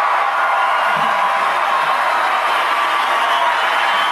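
Recorded crowd cheering played in as a studio sound effect: a loud, steady wash of crowd noise.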